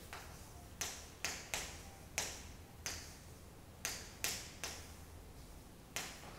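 Chalk writing on a chalkboard: about nine quick strokes, each starting with a sharp tap and trailing off in a short scrape.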